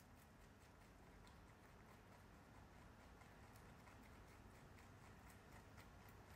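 Faint chewing of rabbits eating fresh dill and greens: quick small crunching clicks, several a second, coming more often in the second half.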